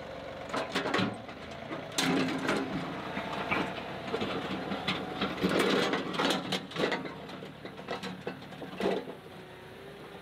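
John Deere compact tractor's diesel engine running as it pulls a box blade with its rippers down through hard, weedy ground, with irregular clanks and rattles from the implement. It grows quieter near the end as the tractor moves off.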